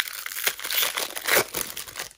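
Foil wrapper of a 1997 Topps baseball card pack being torn open and crinkled by hand: a dense run of irregular, sharp crackles.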